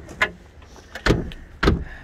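Trunk lid of a stripped Acura Integra sedan being opened: a light click a moment in, then two heavier knocks, about a second in and half a second later.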